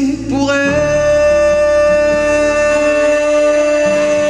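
A live song performance: about half a second in, a singer starts one long held note over the band's accompaniment and sustains it.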